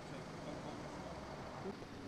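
Steady outdoor background noise with faint distant voices and a low traffic hum.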